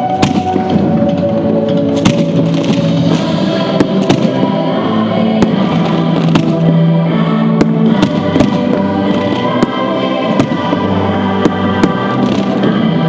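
Aerial fireworks shells bursting, with sharp irregular bangs and crackles about every second, over loud music with sustained chords.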